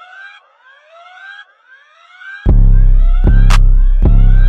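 Trap instrumental beat: a repeating synth figure of short, siren-like rising glides, about two a second. About halfway through, a loud sustained 808 bass comes in, with a couple of sharp drum hits over it.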